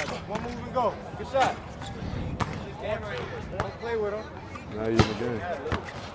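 A basketball dribbled on a hard outdoor court: several sharp bounces, the loudest about five seconds in, under the chatter of people's voices.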